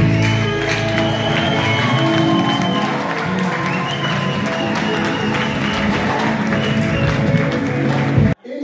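Live gospel band playing: drums, electric guitars and keyboard, with long held notes over a steady backing.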